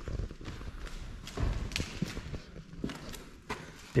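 Footsteps scuffing across a debris-strewn floor, with irregular light clicks and a few dull thuds.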